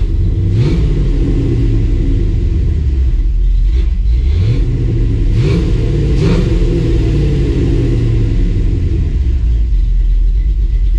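Dodge Dakota R/T's 5.9L Magnum V8, fitted with aftermarket heads and cam, running and revved up twice, once about half a second in and again about four seconds in, each time holding briefly before easing back toward idle.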